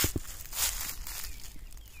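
Footsteps on dry grass and bare soil: a few short clicks near the start, then soft scuffing steps.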